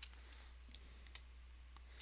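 Near silence with a few faint clicks of a digital pen on a writing tablet, the sharpest about a second in.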